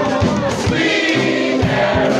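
Live piano-bar music: pianos and a drum kit, with a steady beat and several voices singing together.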